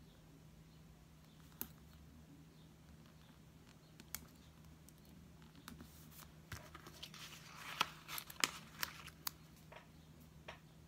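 Paper stickers being handled, peeled from their backing and pressed onto a planner page: a few faint ticks at first, then a run of crinkling and sharp paper clicks in the last few seconds, over a low steady hum.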